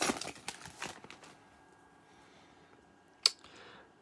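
Trading-card pack wrapper crinkling and cards being handled for about the first second, then near quiet broken by one sharp click about three seconds in.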